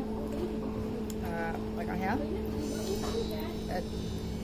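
A voice saying "väga hea, väga hea" ("very good") once, over a steady low two-tone hum.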